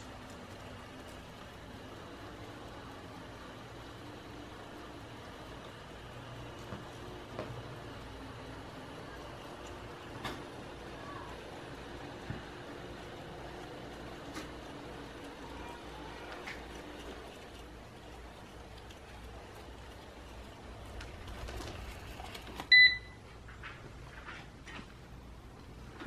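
eufy RoboVac 11S robot vacuum running on carpet: a steady, quiet motor hum with a few scattered clicks. Near the end a single short, high beep is the loudest sound.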